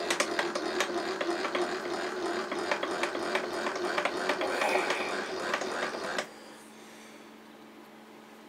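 Milling machine spindle running with a dense clatter of clicks, stopping abruptly about six seconds in, leaving a faint hum. The end mill has just been overloaded by too heavy a cut taken at full reach and has come out of its collet.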